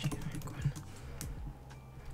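Typing on an M1 MacBook Air's keyboard: a quick run of key taps, then one sharper key press a little over a second in.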